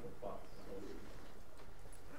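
Quiet lecture-room tone with a brief faint, distant voice shortly after the start.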